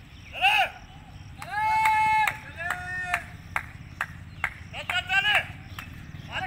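People shouting long, high-pitched calls of encouragement at a sprinter during a 200 m run, four calls with short sharp ticks between them.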